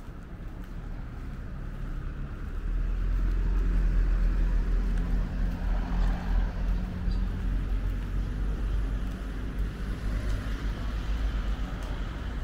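Road traffic: a car's engine and tyre noise swelling about two and a half seconds in, loudest for a few seconds, then easing off into a steady traffic rumble.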